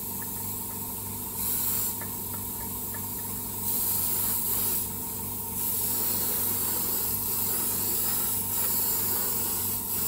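Airbrush spraying paint in passes: a hiss that swells when the trigger is pulled, briefly about a second and a half in, again near four seconds, and steadily from about six seconds on, over a steady low hum.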